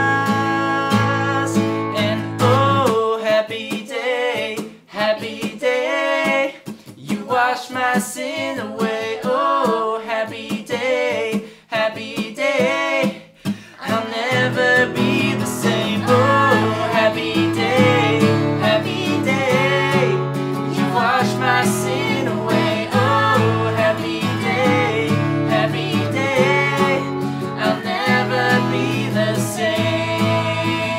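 A man and a woman singing together over strummed acoustic guitar. From about three seconds in, the low guitar strumming drops away and the voices carry on almost alone. The full strumming comes back in about fourteen seconds in.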